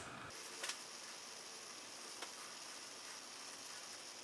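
Faint steady hiss of room tone, with two faint soft clicks, one under a second in and one about two seconds in.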